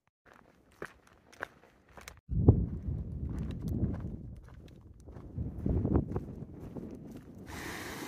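Footsteps of a hiker walking a dirt trail, starting about two seconds in, over a low rumble. Near the end a steady rush of running creek water comes in.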